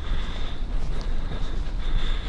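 Steady low outdoor rumble with hiss, and a faint high thin tone that comes and goes.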